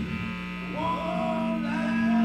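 Live punk rock band dropping to a quieter break: held electric guitar and bass notes, some bending in pitch, ring over amplifier hum. The level builds back up near the end.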